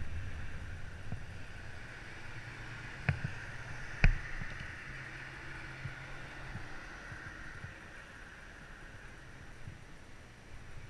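Wind and road noise on a bicycle-mounted camera's microphone, dying down as the bike slows to a stop, with two sharp knocks about a second apart, the second the loudest.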